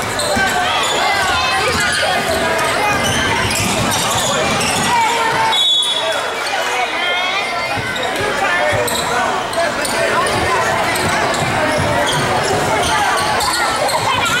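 A basketball being dribbled on a hardwood gym floor, with spectators talking over it and the echo of a large hall.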